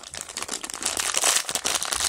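A thin clear plastic bag crinkling as fingers pick it up and handle it. It is a dense crackle that grows louder about a second in.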